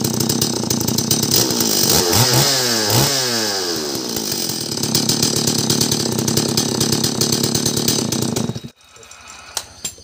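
Stihl MS 381 two-stroke chainsaw engine running on a test run after its connecting-rod bearing was replaced, its pitch dipping and rising around two to three seconds in. It cuts off suddenly near the end.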